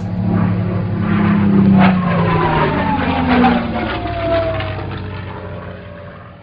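Propeller airplane flying past. Its engine drone swells, then falls in pitch and fades away.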